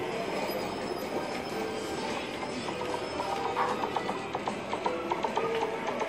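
Arcade game-room din: music and electronic jingles from many game machines at once, with short bleeping tones.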